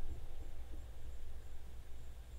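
Low, steady hum with faint hiss and no distinct events: background room tone.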